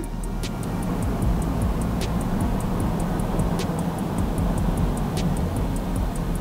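Background music with a steady low bed, a light ticking beat several times a second and a sharper accent about every second and a half.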